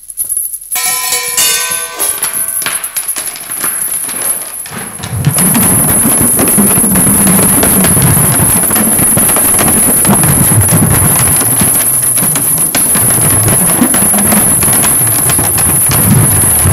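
A few ringing metal percussion tones, then from about five seconds in a loud, continuous rattle of steel chain links swirled around on the skin of a hand-held frame drum.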